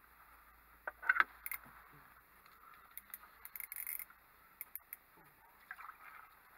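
Handling noise from ice-fishing gear: a few sharp clicks and short clattering knocks, loudest about a second in, with another cluster a couple of seconds later, as an ice rod is handled and laid on the ice.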